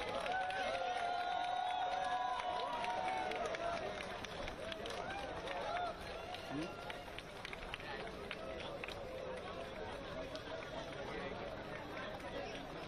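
A crowd of voices shouting and cheering over chatter, with scattered hand claps. It is loudest in the first half and eases off about six seconds in.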